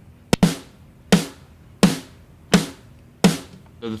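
Sampled virtual-instrument snare drum played back dry, with all its plug-ins switched off: five evenly spaced strikes about 0.7 s apart, each ringing out briefly.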